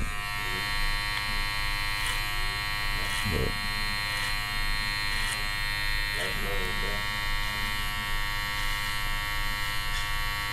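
Electric hair clipper running with a steady buzz as it trims a man's beard.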